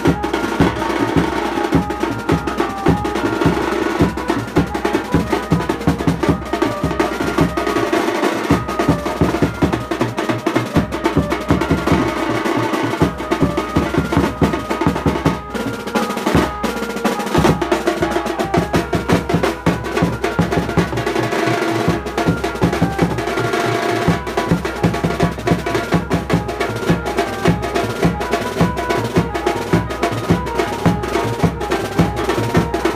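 Banjo-party wedding band playing live: fast, dense snare-drum rolls and bass-drum beats under a sustained melody line. The bass drum stops for short breaks several times.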